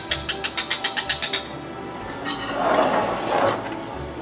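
Wire whisk beating thick batter in a stainless steel bowl, rapid clicking strokes about eight a second that stop after a second and a half. About a second later comes a softer scraping noise. Background music plays underneath.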